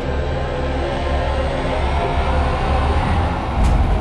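Reveal sound effect from a launch show's sound system: a loud, deep rumbling rush that swells, with a sharp hit shortly before it cuts off abruptly.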